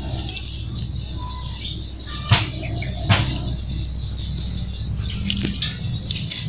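Rustling in dry leaf litter and undergrowth as a cat scuffles with a snake, with two sharp knocks about two and three seconds in.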